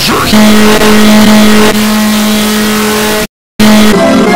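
A loud, harsh, steady buzzing tone, distorted as by heavy audio effects. It holds one pitch for about three seconds, drops out completely for a moment near the end, then comes back.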